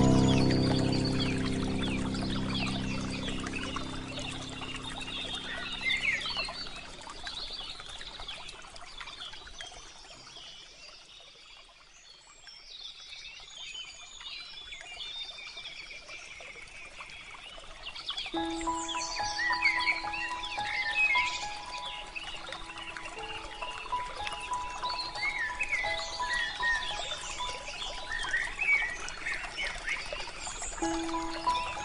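Many small birds chirping in quick, high calls throughout, mixed with soft relaxation music. A held chord fades away over the first several seconds, there is a near-lull around the middle, and sustained gentle notes come in about two-thirds of the way through.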